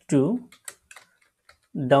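Computer keyboard keys clicking: a quick, uneven run of several keystrokes typing a short command.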